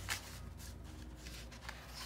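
Pages of an old comic book being flipped by hand: soft paper rustling, with a louder riffle of turning pages right at the start.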